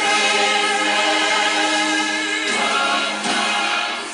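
A large choir singing a sustained passage, played back from a VHS tape through a TV speaker. The level dips briefly near the end.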